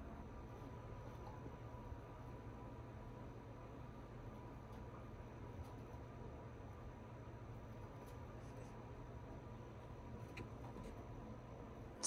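Quiet room tone with a steady low hum and a few faint, scattered ticks.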